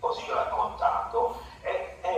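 A man's voice speaking, relayed from a video call.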